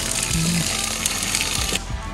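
RV antifreeze spraying from an outside shower head: a steady hiss that cuts off abruptly near the end, over background music.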